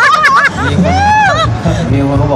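A man's voice through the stage microphone, quick laughing talk and then a drawn-out sliding vocal call that rises and falls. Audience chatter is underneath.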